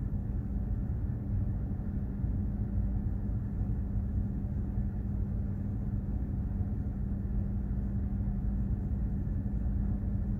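Steady low rumble of a container ship underway, with a constant hum from its engine and machinery, unchanging throughout.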